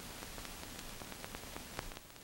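Steady hiss from a worn old film soundtrack, dotted with small clicks and pops, a louder one just before the end; no speech or music.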